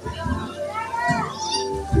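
Children's voices calling and chattering as they play, over background music with held notes.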